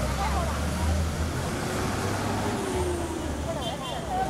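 Street ambience: a steady low rumble of road traffic under several people talking and chattering.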